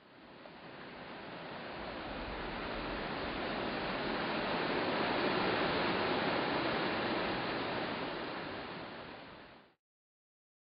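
A smooth rushing noise that swells up over about five seconds and then fades away.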